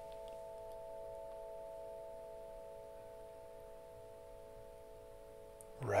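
Soft background ambient music: a steady chord of several held tones that fades slowly.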